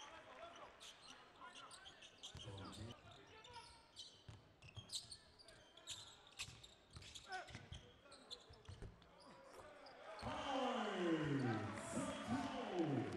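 Live basketball game sound in an arena: a ball bouncing on the hardwood court, with sharp knocks from play on the floor. About two seconds from the end it grows louder with voices that fall in pitch.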